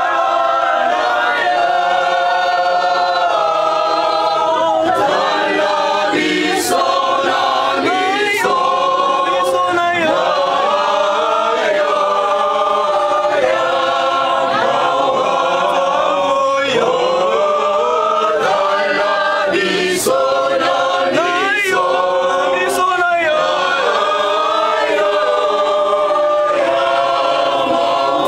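A mixed group of women's and men's voices singing together unaccompanied, a cappella, with no instruments.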